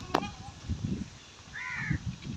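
A crow caws once, a short harsh call near the end, over low bumps and rustling close by.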